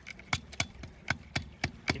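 Steel trap and its chain clinking as they are handled and lowered into water: a row of sharp metallic clicks, about four a second.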